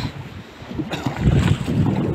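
Low, uneven rumbling buffeting on the camera microphone, starting about a second in.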